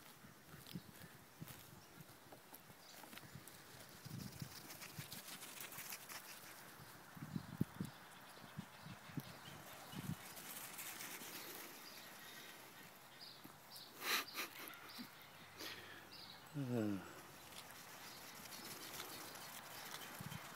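Goat kids' small hooves pattering and clicking on sand and grass as they run, with a couple of sharper knocks about two-thirds of the way through and a short falling-pitched call shortly after.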